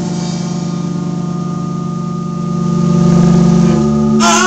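Amplified band instruments holding a sustained, droning chord that swells about three seconds in and breaks off near the end.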